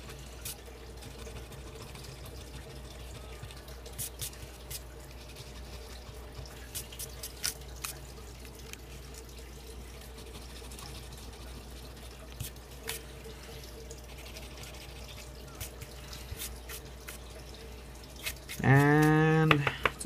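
Coin scraping the coating off a scratch-off lottery ticket: scattered short scrapes and clicks over a steady low hum.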